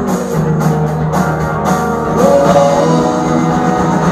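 Live rock band playing a song: acoustic and electric guitars, bass and drums, with a run of cymbal hits in the first half and the band getting a little louder about halfway through.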